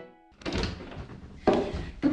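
Two dull thunks about a second apart, the second one louder, just after a music cue ends.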